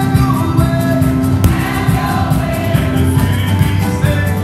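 Upbeat gospel music: a choir singing over a band with a steady beat, holding one long note through most of the passage.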